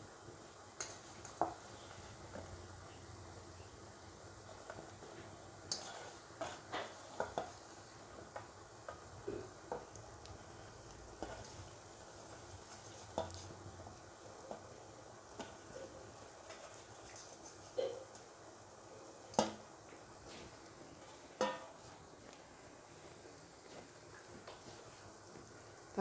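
Coconut-milk gravy simmering in a wok, a faint steady bubbling, with scattered light clinks and taps of a metal bowl and utensils against the pan as dried anchovies are dropped in.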